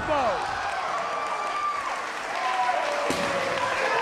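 Wrestling arena crowd cheering and shouting during a pin attempt, with a single thud about three seconds in.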